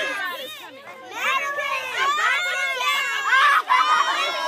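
A crowd of children's voices shouting and talking over one another. The voices are high and overlapping, and they grow louder from about a second in.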